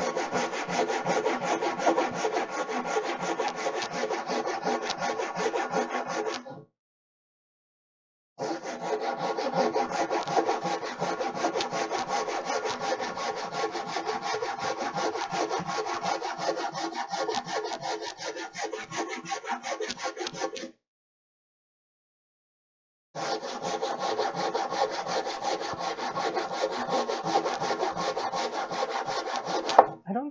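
Hand saw cutting through a wooden board in fast, even strokes, the sound breaking off into silence twice for about two seconds.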